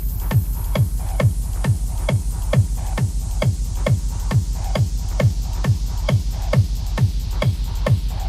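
135 BPM techno remix: a steady four-on-the-floor kick drum at just over two beats a second, each kick dropping in pitch, with hi-hats between the kicks and a hiss that sweeps slowly down in pitch.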